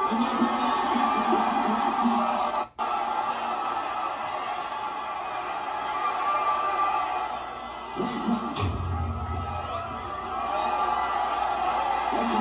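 Concert audio from a phone clip: a large crowd cheering and shouting over music. The sound drops out for an instant about three seconds in.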